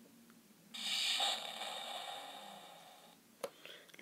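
Electronic sound effect from a handheld Deal or No Deal game's small speaker: a buzzy, hissing tone that starts suddenly about a second in and fades away over about two seconds. A short click follows near the end.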